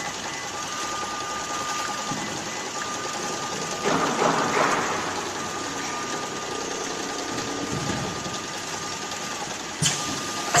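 Automatic case-packing machine running: a steady mechanical hum with a thin high whine that cuts in and out several times. A louder burst of noise comes about four seconds in, and a sharp click near the end.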